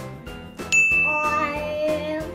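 A bright ding sound effect strikes about two-thirds of a second in and rings on as one steady high tone, over light background music.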